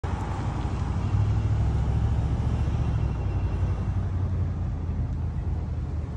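Nissan Titan pickup's engine idling with a steady low rumble.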